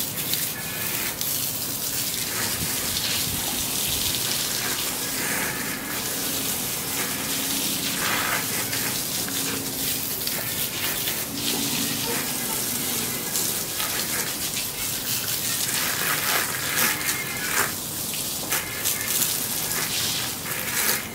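Garden hose spraying water onto a mountain bike: a steady hiss of spray splashing off the frame, fork and wheels and onto the tiled floor.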